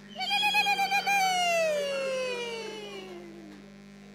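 A woman ululating: a fast, high-pitched trill for about a second, then one long call that glides steadily down in pitch for over two seconds. It is a celebratory cry.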